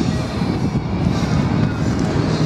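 Wind buffeting the microphone, a steady low rumble with some fluttering.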